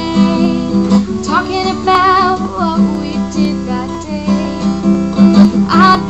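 Strummed acoustic guitar accompanying a woman singing, her voice holding long, wavering notes.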